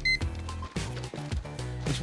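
Card payment terminal beeping once, briefly, at the start, over background music.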